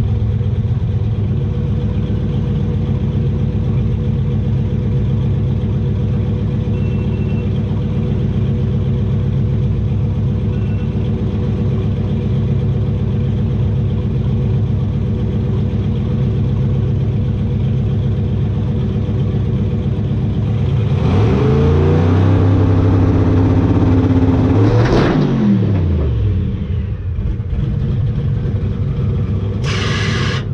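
Twin-turbo big-block Chevy V8 in a C10 truck idling with a lumpy beat, then revved up about twenty seconds in and held briefly, climbing to a peak with a sharp crack and dropping off. A loud sudden bang comes near the end, and the engine sound falls away after it; the run ends with the driveshaft letting go.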